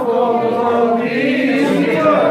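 Several men's voices singing together, drawing out long, held notes without a break.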